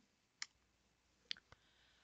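Near silence broken by three faint, short clicks, two of them close together about a second and a half in.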